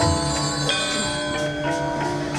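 Balinese gamelan music: bronze metallophones ringing sustained tones that shift pitch in steps, over a quick low pulse of about five beats a second.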